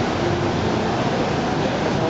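Steady, even rushing noise of a cruise ship's galley, its ventilation running.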